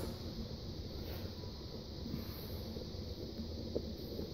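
Steady faint room tone of an empty carpeted room, a low even hiss with a single faint click near the end.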